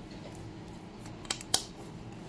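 Two short, sharp clicks about a quarter second apart, from small objects being handled, over a low steady hum.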